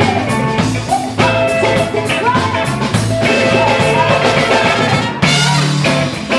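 Live band playing a blues-rock jam: electric guitar, drum kit, congas, keyboard and trumpet, with a woman singing over them.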